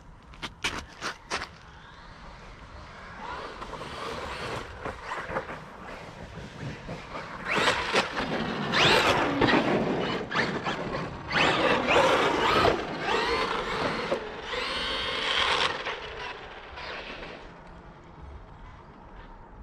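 A few sharp clicks, then a Traxxas Maxx RC monster truck's brushless electric motor whining, its pitch rising and falling with the throttle. It swells louder through the middle and fades away near the end.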